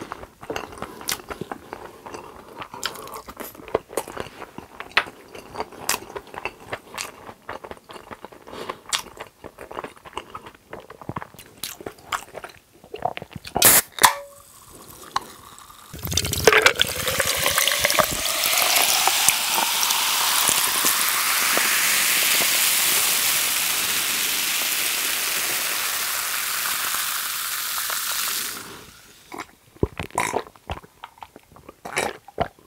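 Close-miked chewing and mouth clicks for the first half, then a sharp crack a little before halfway, like a soda can being opened. Carbonated cola is then poured from the can into a glass jar packed with ice, fizzing loudly, with a tone that rises steadily in pitch as the jar fills, and it stops shortly before the end.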